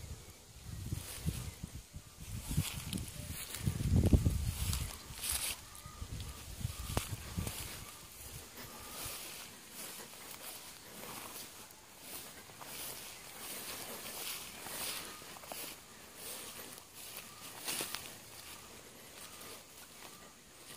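Footsteps swishing through tall grass and brushing vegetation while walking, heard as many short rustles. A low rumble on the phone's microphone is heavy in the first several seconds, loudest about four seconds in, then eases off.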